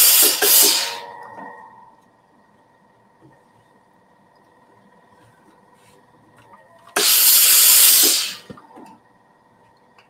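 LauraStar steam iron with an iron shoe giving two hissing bursts of steam into mesh fabric while pressing binding, the first ending about a second in and the second lasting about a second and a half from about seven seconds in.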